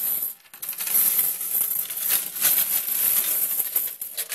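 Hungarian 200-forint coins pouring out of a tipped-up coin bank onto a paper-covered table, a dense run of clinking as they spill and pile up, with a brief lull about half a second in.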